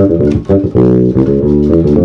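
Squier electric bass playing a quick lick in G Mixolydian: a fast run of plucked notes with one note held briefly about a second in.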